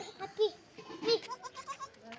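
Goats bleating: a few short calls, the clearest about half a second and a second in, with fainter ones after.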